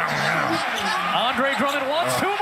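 A basketball dribbled on a hardwood court under steady arena crowd noise, mostly covered by a man's exclaiming "yow" and laughing.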